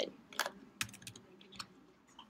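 A few scattered keystrokes on a computer keyboard, short separate clicks such as the Return key being pressed to open blank lines in the code.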